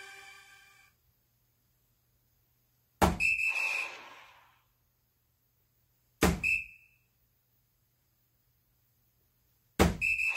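Three soft-tip darts striking a Granboard electronic dartboard, about three seconds apart; each hit is a sharp knock followed at once by a short high electronic beep from the game, the first with a longer sound effect trailing off for a second or so.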